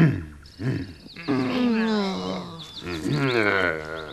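Cartoon sound effects of angry birds: a brief burst of high, rapid chirping, then long, harsh growling cries that slide down in pitch.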